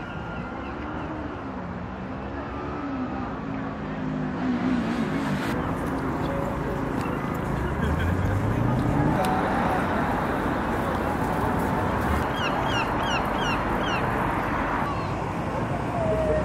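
Seafront ambience: a steady rushing noise with people's voices in the first few seconds and a vehicle engine rising in pitch about halfway through, then a quick run of about six sharp, rising gull calls near the end.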